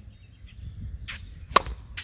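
Sharp pops of a tennis ball on a hard court during a serve routine. The loudest comes about a second and a half in, over a low rumble of wind on the microphone.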